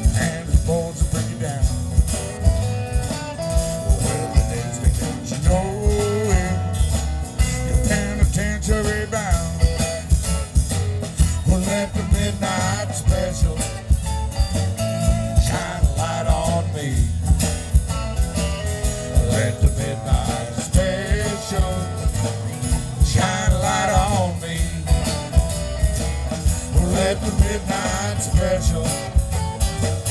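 Live country-blues band playing: electric and acoustic guitars, bass and drums, with a steady drum beat about twice a second and a melodic lead line bending over it.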